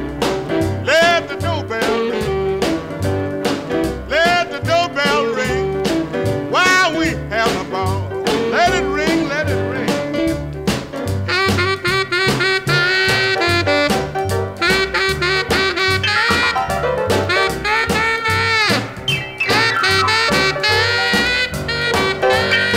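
Instrumental break in a swing-style piano blues song: a saxophone solo over bass and drums with a steady beat, the melody growing busier about halfway through.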